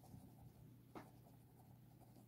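Faint scratching of a ballpoint pen writing on squared notebook paper, with one soft tick about a second in.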